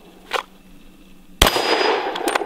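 A single pistol shot about a second and a half in, followed by its echo. A fainter knock comes about a third of a second in.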